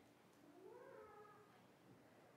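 A baby's faint whimper: one short cry, about a second long, rising and then falling in pitch, over near-silent room tone.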